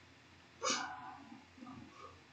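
A single short call from a household pet about two-thirds of a second in, fading quickly, then a few faint small sounds.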